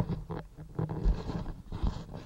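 Irregular knocks, clicks and rustling of small parts and leads being handled on a workbench.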